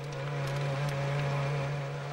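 Onboard sound of a Williams-BMW FW26 Formula One car off the track in a gravel trap: the engine runs at a steady note under a rough rushing noise of gravel against the car.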